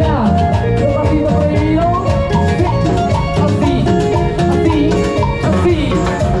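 Live band playing a loud, upbeat Latin dance groove: a steady drum beat with percussion under melodic lines.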